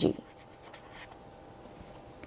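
Felt-tip marker writing on paper, a few faint short strokes as letters are drawn.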